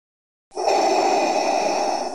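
A dense, noisy sustained sound with a few steady high tones, coming in about half a second in after silence and easing off near the end: the opening sound of the song recording, before any singing.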